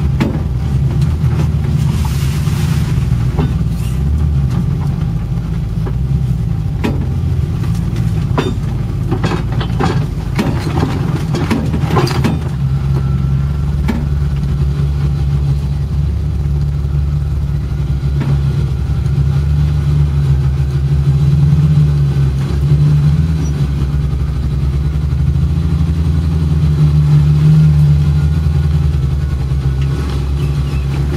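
Unimog engine running steadily under load as it crawls along a rough forest trail, heard from inside the cab. A scatter of knocks and clatter comes in the first half.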